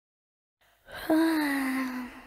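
A cartoon baby's yawn: one long, drawn-out voiced sigh that starts about a second in and slowly falls in pitch.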